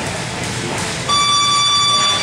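Electronic gym round-timer buzzer sounding one steady, loud tone about a second in for about a second, the signal that the sparring round is over.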